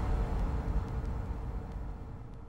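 Tail of a logo-reveal impact sound effect: a low rumble with hiss, fading steadily, with a few faint ticks.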